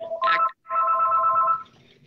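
Electronic telephone tones on a conference call line: a short beep, then a steady tone of several pitches held for about a second.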